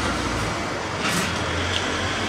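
Steady low rumble of background road traffic, with a short hiss about a second in.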